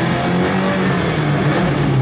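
Lada VAZ-2105's 1.5-litre carburettor four-cylinder engine accelerating hard, heard from inside the cabin as the car pulls away with its wheels slipping on snow. The engine note dips briefly about one and a half seconds in.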